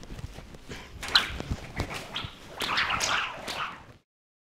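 A lead rope swished through the air several times, with thudding, scuffing steps in arena sand underneath. The swishes come thickest shortly before the end.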